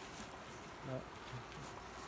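Faint buzzing of a flying insect, with a brief murmur of a man's voice about a second in.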